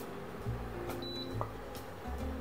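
Wooden spatula scraping scrambled eggs from a nonstick frying pan into a ceramic bowl, with two or three light taps, under soft background music.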